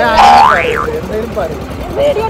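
A short, loud high-pitched squeal that swoops up and back down in pitch in the first second, followed by people talking.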